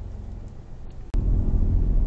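Low rumble of a car on the move, heard from inside the cabin, fading down over the first second. Then a sharp edit click and a sudden jump to a much louder engine and road rumble.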